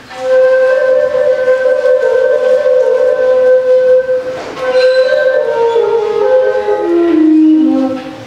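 Replica southwestern desert rim flute, copied from the ancient flutes of Broken Flute Cave, playing a slow melody of long held notes. There is a short break about halfway, and after it the line steps down in pitch near the end.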